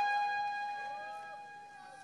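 A ringing electronic tone with short repeating echoes, the tail of a sound effect over the stage PA, fading steadily away.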